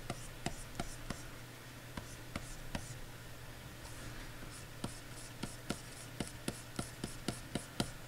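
Stylus nib tapping and stroking on a graphics tablet while painting: a run of light clicks that come closer together in the second half, about three or four a second, over a low steady hum.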